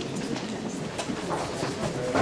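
Indistinct murmur of several people's voices talking at once, with small scattered clicks and knocks.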